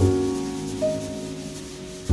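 Jazz piano trio playing a slow ballad. A piano chord with a low bass note is struck at the start and left to ring down, and a single higher note is added just under a second in. Drum brushes swish softly on the snare throughout.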